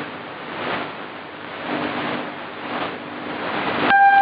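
Shortwave AM reception on a Kenwood TS-50 receiver: a steady rush of static hiss that swells and fades about once a second, with a faint low hum underneath. A loud steady beep from the station's time signal starts right at the end.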